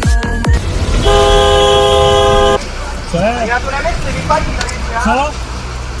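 A car horn sounding one steady, held blast of about a second and a half, just after a few beats of electronic dance music cut off.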